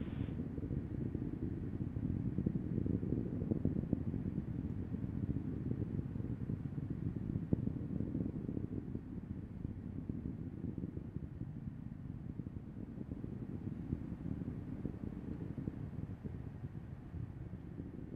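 Steady low rumble of the Falcon 9 rocket's first stage, heard from the ground far below the climbing vehicle, easing off somewhat in the second half.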